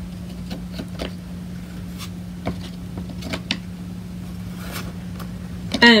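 Scattered light taps and clicks of thin laser-cut wooden craft pieces being handled and pressed together on a tabletop, over a steady low hum.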